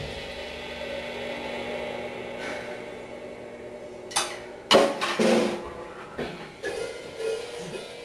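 The final hit of a rock cover on electric bass and drum kit ringing out and fading away. It is followed, from about halfway through, by a few short knocks and clicks.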